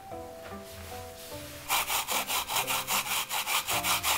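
Asian pear being grated on a clear grater dish: quick, even rasping strokes, about four or five a second, starting a little under two seconds in.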